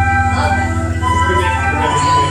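Live Irish traditional band playing a tune together on tin whistle, banjo and button accordion, the held melody notes carried over a steady pulsing rhythm.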